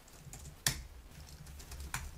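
Typing on a computer keyboard: a handful of separate key clicks, the loudest a little under a second in.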